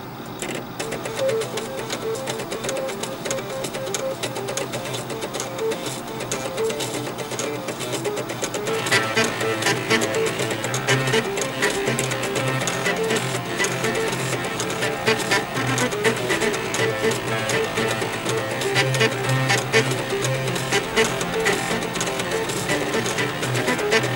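Eight 3.5-inch floppy disk drives' head stepper motors buzzing out a tune, each note a pitched mechanical buzz. About nine seconds in, more parts join, adding lower bass notes and denser clicking, and the music grows fuller and a little louder.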